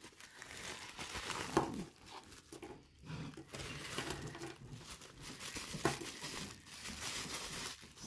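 Crinkling and crackling of a plastic bubble-wrap bag being handled and opened to take out metal costume jewellery, with a couple of sharp clicks.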